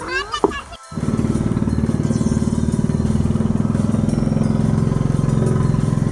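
Small outrigger boat's (bangka's) engine running steadily underway, an even, fast putter that starts abruptly about a second in.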